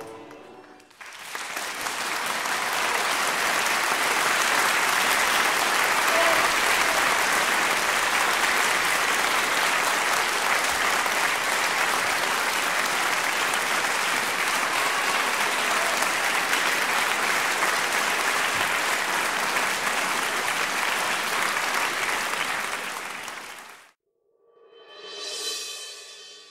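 Audience applause, steady clapping that rises in about a second in and holds for some twenty seconds before cutting off suddenly. Near the end, music swells in.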